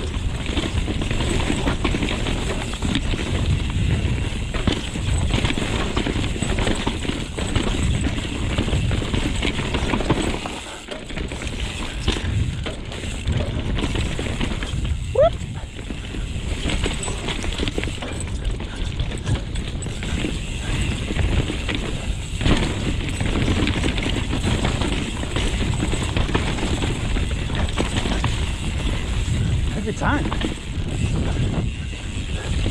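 Mountain bike rolling fast down rough dirt singletrack: a steady, loud rumble and rattle of tyres, chain and suspension over ruts and roots. It eases briefly about eleven seconds in, and a short rising squeak comes about fifteen seconds in.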